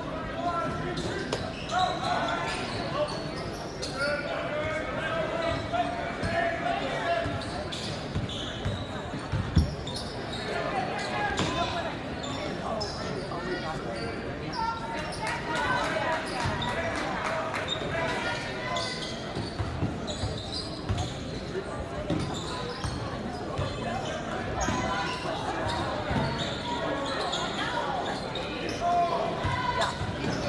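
Basketball bouncing on a hardwood gym court during play, with spectators talking throughout in a large gym. One sharp thump stands out about nine and a half seconds in.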